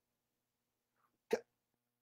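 Near silence, broken once about a second and a quarter in by a man's short, sharp intake of breath.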